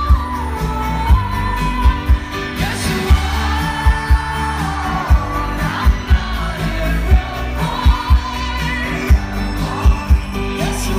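Live pop song played by a band through a festival PA: a woman singing lead over drums, bass and keyboards, with a steady beat.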